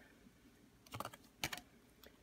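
Baseball cards being flipped through by hand, cards slid off the stack one at a time: a few faint, crisp clicks about a second in and again half a second later.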